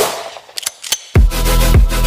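Electronic dance music with a heavy bass beat. It breaks off briefly, with a few sharp clicks in the gap, and the beat comes back in with a deep bass hit about a second in.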